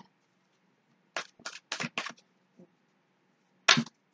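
Tarot deck being shuffled by hand, the cards slapping together: a quick run of four or five slaps about a second in, then one sharper, louder slap near the end.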